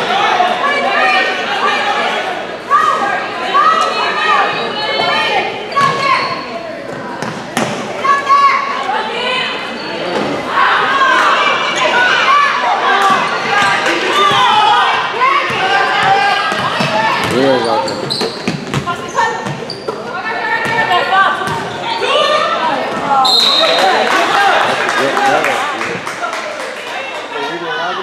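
Basketball dribbled and bouncing on a hardwood gym floor among players' running feet, under indistinct shouting and chatter from players and spectators, echoing in the gymnasium.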